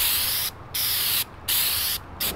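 Aerosol spray can of black textured stone-guard coating sprayed in three short bursts of hiss, each about half a second long with brief gaps between, the nozzle only half pressed.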